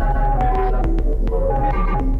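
Electronic music from a modular synthesizer with Erica Synths modules: a steady deep bass drone under a repeating sequence of short synth notes, with light regular ticks.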